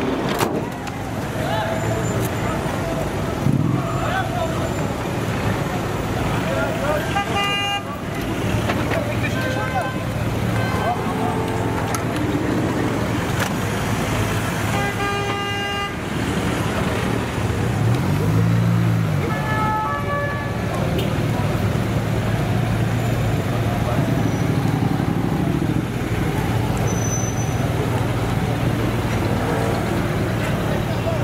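Slow street traffic of gendarmerie vans driving past, engines running steadily, with car horns tooting four times, the third toot the longest at about a second and a half. An engine revs up and back down about two-thirds of the way through.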